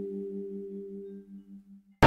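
The tail of a background music track: a sustained chord with an even pulsing tremolo rings on, fades steadily and dies away just before the end.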